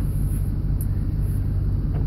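Vehicle engine idling, a steady low hum heard from inside the cab.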